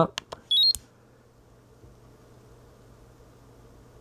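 Peak Atlas DCA Pro (DCA75) component analyser giving a short rising run of electronic beeps about half a second in, as its on-test button is pressed to start a transistor test, just after a few quick clicks. A faint steady low hum follows.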